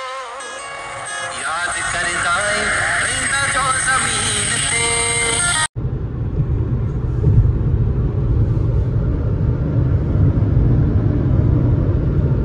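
Music with a singing voice for about the first six seconds, cutting off abruptly. Then the steady rumble of road and engine noise inside a car driving at highway speed.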